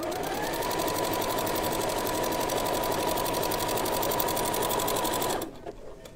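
Electronic sewing machine stitching a zigzag seam, topstitching lingerie elastic. Its motor whine rises as it speeds up over the first second, then holds steady under a fast, even run of needle strokes until it stops about five and a half seconds in.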